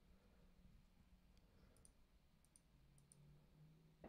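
Near silence with a few faint computer mouse clicks in the middle of the stretch.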